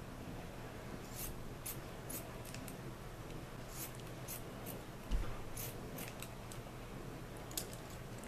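Metal scissors snipping through cotton T-shirt fabric, a series of short snips coming in small groups every second or two. A low thump about five seconds in.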